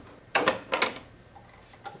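Two short knocks about half a second apart as a circuit board (an Oberheim OB-Xa pot board) comes free of the metal front panel's mounting studs and is handled away from it.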